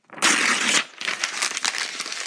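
Loud crinkling, rustling handling noise, strongest for about half a second near the start, then a rougher rustle with scattered clicks.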